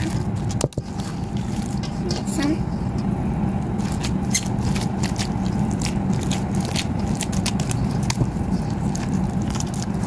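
Hands kneading and squeezing sticky slime packed with foam beads: a steady stream of small wet clicks and crackles over a low, even hum.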